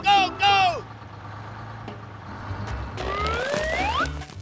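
Dubbed cartoon sound effects for a toy dump truck. Two short, loud, falling voice-like "wah" calls open it, then a low steady engine-like hum, and a rising whistle glide in the last second.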